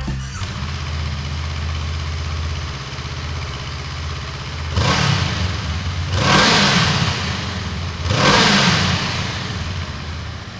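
Honda CL500's parallel-twin engine idling, then blipped three times about a second and a half apart, each rev rising and falling back to idle, inside a concrete underpass.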